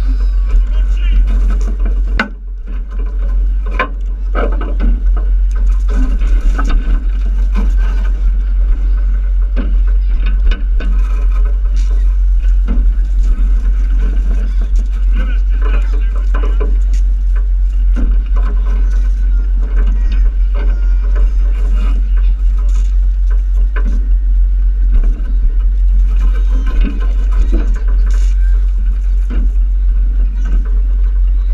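Steady low rumble, with scattered voices of children in a water fight and music in the background.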